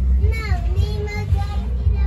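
A child's high voice singing a short phrase, sliding and then holding its notes for about a second, over a constant low rumble.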